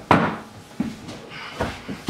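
A few knocks and thuds of a hand and body bumping against a wall and a refrigerator as a wounded man staggers and braces himself; the first knock, just at the start, is the loudest, with softer ones a little under a second in and near the end.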